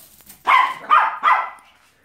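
A small dog barking three times in quick succession.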